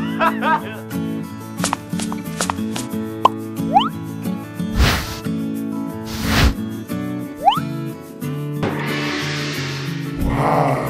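Background music with sustained notes, overlaid with short cartoon sound effects: several quick rising whistle-like glides and two brief whooshes in the middle.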